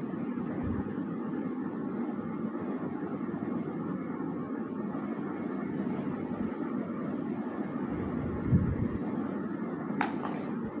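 Steady low rumbling background noise with no words over it, and a brief low bump about eight and a half seconds in.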